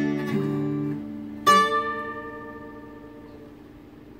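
Acoustic guitar being picked. Held notes give way about a second and a half in to one loudly struck chord, left to ring and fade out.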